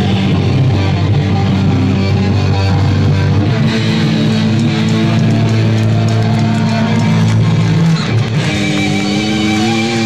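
Live hardcore band playing an instrumental passage: heavily distorted electric guitars and bass over drums, loud and steady. The chords change about three and a half seconds in, and again after a short break near the end.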